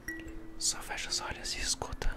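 Soft chime notes ringing out one after another at different pitches, each held and overlapping the next: a 'celestial sound' played as a sleep trigger. A soft whisper runs over the notes in the middle.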